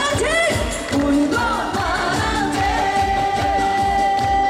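A woman sings a Korean trot song live over a band with a steady kick-drum beat; her melody bends and slides in pitch. About two and a half seconds in, a long held note begins.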